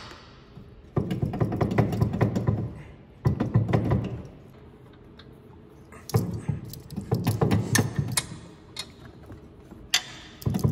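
Metal parts of the UTV's front mounting bracket and frame being handled: three bursts of clattering and knocking as pieces are shifted against each other.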